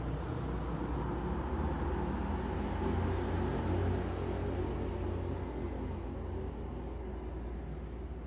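Low, steady rumbling background noise with no voices, swelling to its loudest about three to four seconds in and then easing off.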